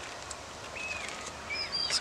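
A few short, high bird chirps over steady outdoor background noise, starting about a second in.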